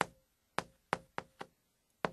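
Chalk tapping against a chalkboard while words are written: about five short, sharp taps at uneven intervals.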